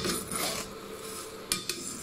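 Pumpkin seeds being stir-fried with salt in a stainless steel frying pan: a metal spatula scrapes and sweeps them round in repeated rasping strokes, with a sharp clink against the pan about one and a half seconds in.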